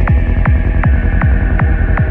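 Dark psytrance at 158 BPM: a driving four-on-the-floor kick drum, about two and a half beats a second, locked with a rolling bassline, while a synth line above slowly falls in pitch.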